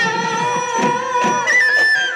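Live Bihu folk music: dhol drums beaten in a quick rhythm under a wind pipe that holds one long note and then steps up to a higher note near the end.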